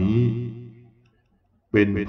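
Speech only: a man reciting Buddhist scripture in Thai in a slow, chant-like voice. A drawn-out syllable fades away in the first second, a short silence follows, and the recitation starts again abruptly near the end.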